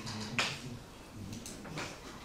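Chalk tapping and scraping on a blackboard as writing goes on: a sharp tap about half a second in, then a few shorter strokes near the end, over a low steady hum.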